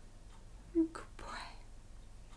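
A woman speaking briefly and quietly ("good boy"), otherwise quiet room tone.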